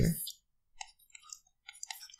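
Stylus tapping and sliding on a drawing tablet during handwriting: a string of light, quick clicks, sparse at first and getting busier near the end.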